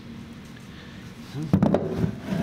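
Quiet room tone, then about one and a half seconds in a few knocks as a wooden casting mold is set down on a wooden workbench.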